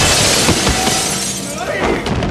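A body smashing through a wall panel: a heavy crash, then shattering and breaking debris that fades over about a second. A short yell follows near the end.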